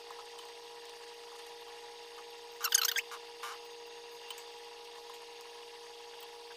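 A short clatter of kitchen handling about two and a half seconds in, with a smaller tick just after, as a pretzel is dipped in melted chocolate and set on a sheet pan. A faint steady hum runs underneath.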